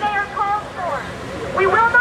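Speech only: a woman's voice amplified through a handheld megaphone, speaking in short phrases.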